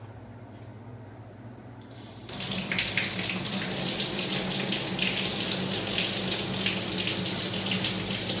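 A faint low hum, then a little over two seconds in water suddenly starts running from a bathroom tap and keeps flowing steadily.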